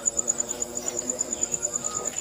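A cricket chirping: a steady, high-pitched pulsing trill, about ten pulses a second.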